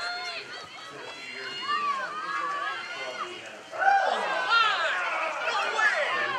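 Several high-pitched voices shouting and calling out over one another, getting louder about four seconds in.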